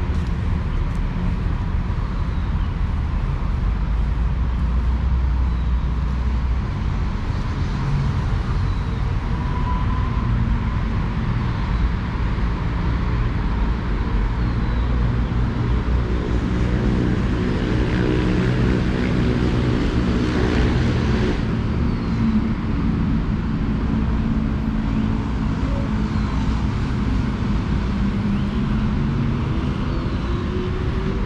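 Steady rumble of road traffic beyond the park. In the second half a vehicle engine stands out, its note rising and falling as it passes. Faint short bird chirps come now and then.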